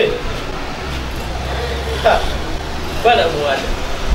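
Short voice sounds from men over a steady low background rumble, with a man's brief laugh, a quick run of short repeated voice sounds, near the end.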